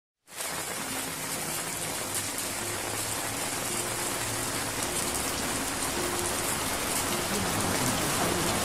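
Steady rain-like hiss that fades in right at the start and slowly grows louder, with faint low tones now and then underneath.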